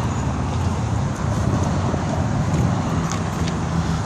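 Steady low rumble of road traffic, with a steady engine hum coming in during the last second.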